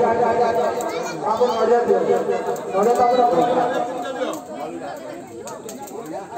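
Several people's voices talking over one another, getting quieter over the last two seconds.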